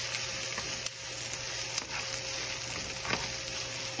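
Sliced onions sizzling in oil in a nonstick skillet, a steady frying hiss as they are sautéed toward caramelization. A spoon stirs them, with a few light clicks against the pan.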